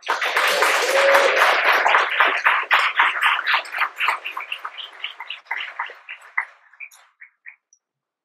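Audience applauding, starting suddenly in a dense patter of claps that thins out over a few seconds into scattered single claps before it stops.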